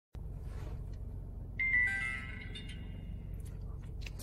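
A short electronic chime of several notes stepping down in pitch, about one and a half seconds in, over a steady low hum.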